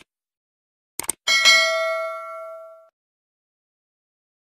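Subscribe-button sound effect: two quick mouse clicks about a second in, then a bright notification-bell ding that rings out for about a second and a half.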